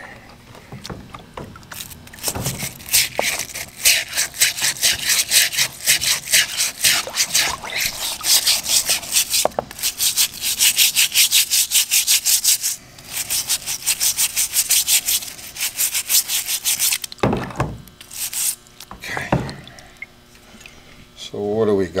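Stiff nylon-bristle scrub brush scrubbing a rusty steel motorcycle strut in rapid back-and-forth strokes, about five a second, in two long runs with a short pause between them. The strut has been soaking in a white vinegar and salt solution, and the brushing is loosening its rust.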